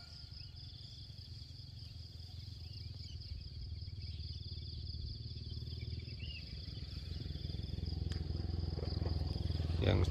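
A steady high-pitched insect drone with a faster pulsing trill just below it, over a low rumble that grows louder toward the end.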